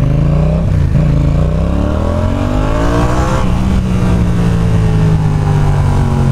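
Yamaha XSR 700's 689 cc parallel-twin engine revving up hard in second gear, its pitch climbing for about two and a half seconds. About three and a half seconds in, the revs fall off suddenly and the engine settles into a steady, lower run.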